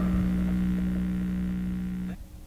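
Tail of a punk rock song ringing out: the last crash and chord fade away, leaving a steady low held tone.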